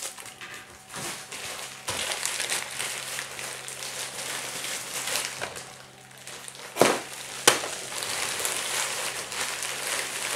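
Plastic bubble-wrap packaging being handled and pulled open, crinkling and rustling steadily, with two sharp snaps about seven seconds in.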